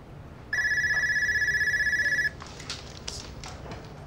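Office telephone ringing once: a single electronic ring with a fast warble, about two seconds long, starting about half a second in. A few light clicks and knocks follow as the phone is picked up.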